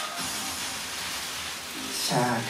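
Faint background music over a steady hiss of room noise.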